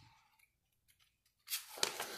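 Paper rustling as a page of the almanac is handled or turned. A short crisp rustle starts about one and a half seconds in, after near silence.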